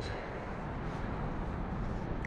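Steady, even outdoor background rush with no distinct sounds standing out of it.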